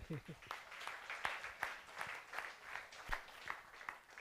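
Audience applauding: many hands clapping in a dense, steady patter at the end of a lecture.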